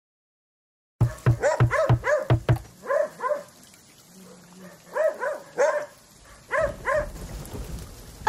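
A dog barking in quick runs of several barks at a time, starting about a second in, over steady rain.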